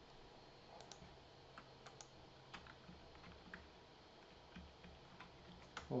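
Faint, irregular clicks of a computer keyboard and mouse, about a dozen scattered keystrokes with pauses between them.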